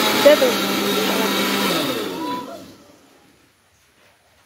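Electric mixer grinder running steadily as it grinds spices in its steel jar. About two seconds in it is switched off: the motor's pitch slides down and the sound fades away within about a second.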